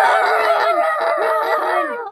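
Several voices crying out loudly at once, a dense tangle of overlapping wavering cries.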